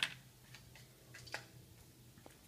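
Small clicks and ticks of a toy car and its plastic packaging being handled: one sharp click at the start, then a few faint ticks.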